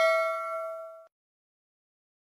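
A bell-like ding sound effect rings out, its tone fading and then cutting off suddenly about a second in.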